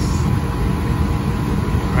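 Steady low rumble of a water-cooled commercial air-conditioning unit running, its blower and compressor, with a faint steady hum on top.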